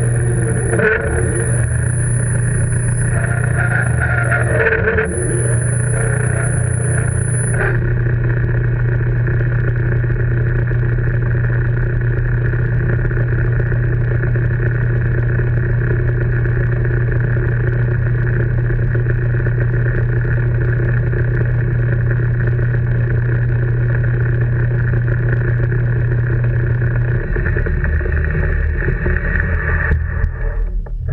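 Metal lathe running steadily with a constant motor hum while it turns a velocity stack in the chuck. A thin high whistle sounds with short breaks for the first several seconds and stops about eight seconds in. Near the end the lathe's low hum shifts.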